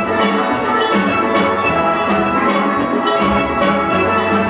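A full steel orchestra playing: many steel pans struck in a fast, rhythmic melody and chords, backed by a drum kit.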